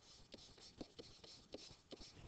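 Faint scratches and taps of a pen stylus writing numbers on a tablet surface, about half a dozen short ticks.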